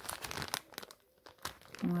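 Clear plastic sachet of ribbons crinkling as it is handled and turned, irregular crackles through the first second, then a lull and a few more crackles.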